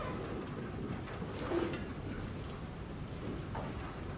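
Quiet room hiss with faint strokes of a dry-erase marker writing on a whiteboard, a little stronger about a second and a half in.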